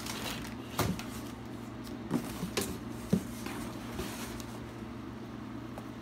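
Rummaging through a cardboard box of loose wooden guitar-kit parts: cardboard rustling and a few light knocks of wood and card, over a steady low hum.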